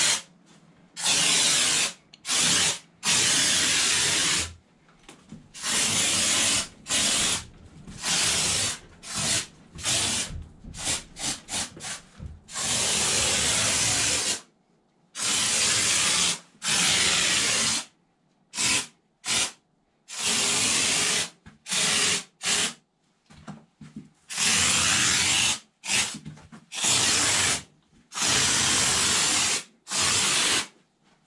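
Kraken canned spray foam insulation fired through a foam applicator gun, hissing loudly in bursts that start and stop sharply as the trigger is pulled and released. About ten seconds in comes a run of quick, short squirts.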